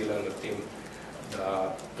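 A man speaking Slovene into microphones in halting phrases, with a short pause in the middle.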